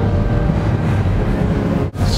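Steady low rumble of outdoor ambience on the camera's microphone, with faint steady tones above it; the sound briefly drops out near the end.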